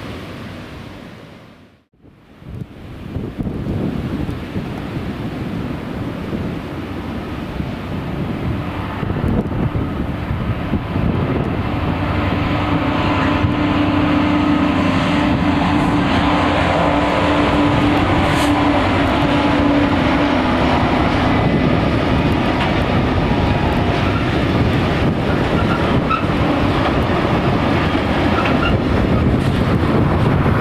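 Class 66 diesel-electric locomotive's two-stroke V12 engine running as it hauls a freight train across a steel girder bridge, followed by the steady rumble and clatter of its wagons crossing the bridge. After a brief drop about two seconds in, the sound builds up and then holds steady and loud.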